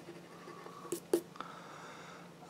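A coin scratching the coating off a scratch-off lottery ticket, faint, with two short sharp clicks about a second in.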